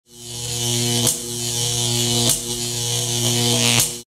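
A loud, steady electric buzz with hiss above it, broken three times by short clicks, cutting off suddenly at the end.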